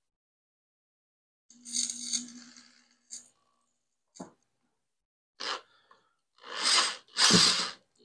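Corded electric drill boring slowly into the tube of a metal ALICE pack frame, run in short bursts so the bit won't bite and twist the frame: one burst with a steady motor hum about two seconds in, a few light clicks, then two stronger bursts near the end.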